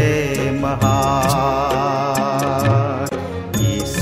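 Hindi Christian devotional song: a long, wavering held melody line, most likely the sung refrain, over a steady percussion beat and instrumental accompaniment.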